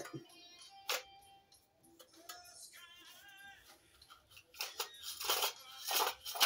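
Quiet background music, with a sharp click about a second in and rustling, scraping handling noises near the end as a small engine's metal recoil starter housing is turned over in gloved hands.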